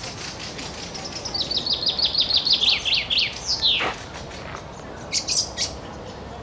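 A songbird in the tree canopy sings one phrase: a rapid series of short downslurred notes that gradually drops in pitch, ending in one long downward slide. A few short, sharp notes follow near the end.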